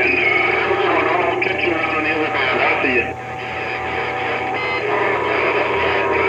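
Transceiver speaker on the 11-metre CB band, AM at 27.185 MHz, receiving skip: several garbled voices buried in static, with steady whistling tones over them. The loudness dips briefly about halfway through.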